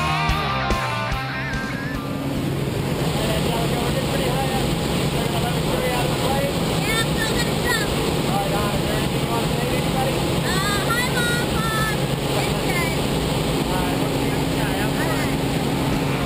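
Steady drone of a single-engine light aircraft and rushing air inside its cabin during the climb, with voices raised over it. Rock music fades out about two seconds in.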